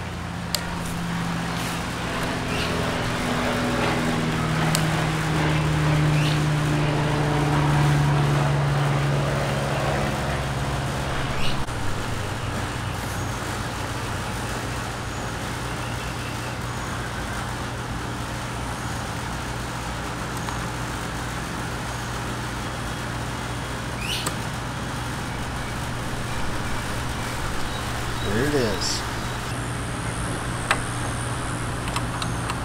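An engine runs steadily in the background. Its hum swells over the first several seconds, then settles a little lower about twelve seconds in. A few light metallic clicks come from a hex key working the screws of a brake master cylinder cap.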